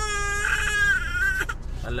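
A baby crying: one long, steady wail that stops about one and a half seconds in, over the low rumble of a car's cabin.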